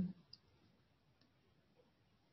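Mostly quiet room tone in a pause between spoken names, with the last of a word trailing off at the start and two faint ticks.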